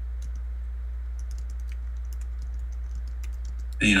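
Faint, scattered clicks of a computer being operated over a steady low electrical hum.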